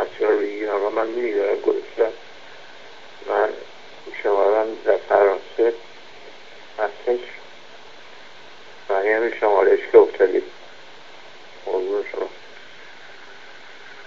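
A recorded telephone voicemail played back: a man's voice through a narrow, tinny phone line, in several short phrases with pauses between, over a steady line hiss. The words are hard to make out.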